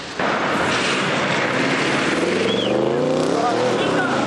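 A car driving on a wet road: a steady hiss of tyres and engine, with the engine note rising as the car speeds up through the middle of the clip.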